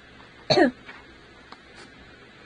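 A young woman coughs once, a short cough about half a second in, continuing a coughing fit.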